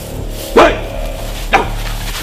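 A dog barking twice, about a second apart, each bark dropping in pitch.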